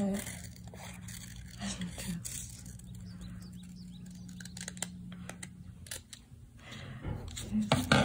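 Scissors snipping through coloured paper in a run of short, sharp cuts, with paper rustling as it is handled. A steady low hum runs underneath.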